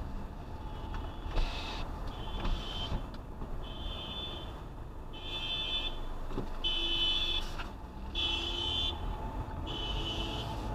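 Car alarm sounding: a high tone pulsing on and off about every second and a half, louder in the second half, over the steady low engine and road noise of the moving car.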